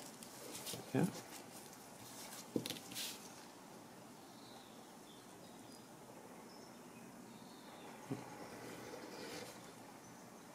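Faint scraping of a steel edge beveler shaving the cut edge of 2 mm black vegetable-tanned leather, a few short strokes.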